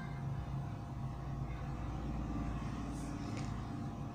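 A steady low rumble, like an engine or traffic nearby, with faint scratches of a pencil writing on paper.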